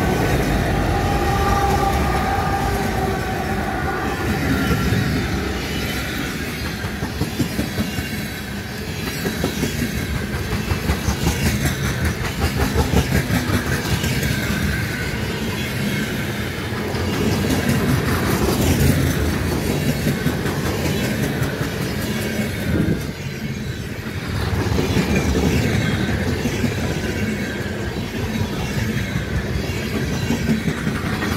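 A long freight train rolling past at speed. The locomotives' engine sound fades over the first few seconds. Then a steady rumble of passing freight cars, with wheels clacking over the rails and the sound swelling and easing as the cars go by.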